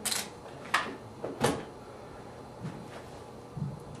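Handling noise: three short knocks or clatters in the first second and a half, then a few faint taps and rustles, as tools are put down and moved about.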